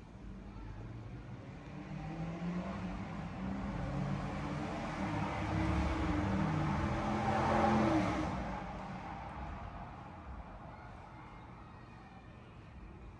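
A motor vehicle passing outside: its engine grows louder over several seconds, is loudest about eight seconds in, then fades away quickly.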